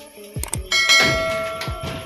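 A subscribe-button notification sound effect: a couple of quick clicks about half a second in, then a bell ding that rings out and fades over about a second. Background music with a steady beat runs underneath.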